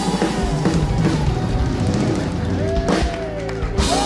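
A live band with a drum kit plays the instrumental close of a song, with regular drum strokes under it and a loud hit just before the end.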